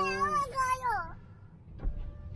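A person's drawn-out wordless vocal sound, held on one pitch and then falling away, ending about a second in. A faint click follows near the end.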